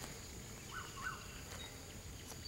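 Two short rising bird chirps close together about a second in, over a faint steady high-pitched insect drone.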